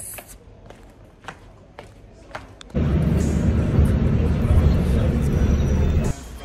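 A loud, low rumbling noise that starts suddenly about three seconds in and cuts off just as suddenly, after a stretch of faint background with a few light clicks.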